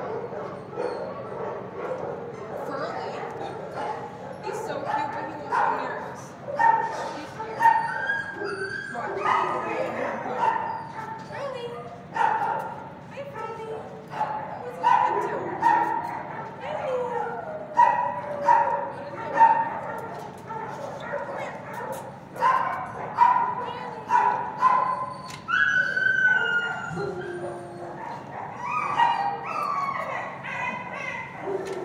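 Shelter dogs barking, yipping and whining in short, irregular calls that repeat throughout.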